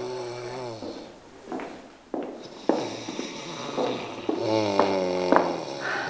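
A man snoring: one long snore that trails off about a second in, and a second long snore from about four to five and a half seconds in. A few sharp taps fall between and during the snores.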